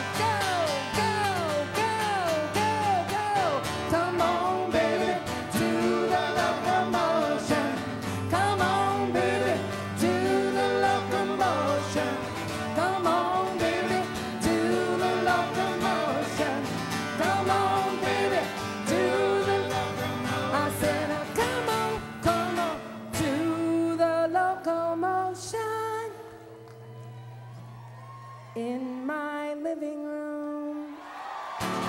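Live pop-rock band playing with singing. The music is full until about 23 seconds in, then thins to a sparser passage with a held low note, and rising notes come in near the end.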